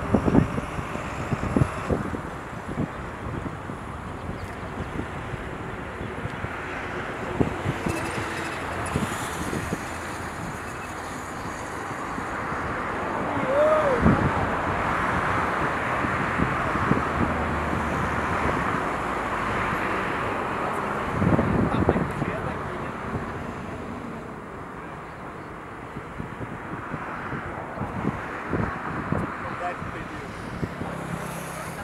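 Distant jet noise from the four GEnx engines of a Boeing 747-8F on final approach, a steady sound that grows louder from about halfway through and eases off again near the end, with wind buffeting the microphone.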